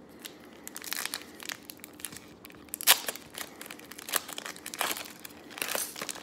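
Foil trading-card pack wrapper crinkling and tearing as it is pulled open by hand: a run of irregular crackles, the sharpest about three seconds in.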